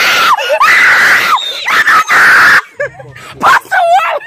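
A person screaming in several loud, high shrieks for about the first two and a half seconds, in alarm at a live land crab being handled; quieter voices follow.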